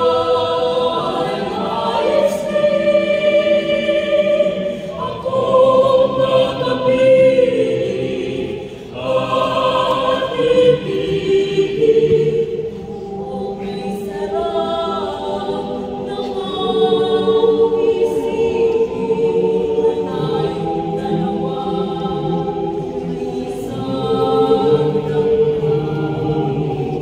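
Mixed choir of young men and women singing held chords in harmony, the chords changing every few seconds, fuller and louder in the first half and softer from about halfway through.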